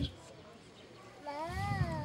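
A person's voice after about a second of quiet: one drawn-out vocal sound whose pitch rises and then falls.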